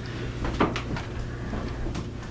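A few light knocks and clicks of a door being handled and footsteps, the sharpest a little over half a second in, over a steady low hum.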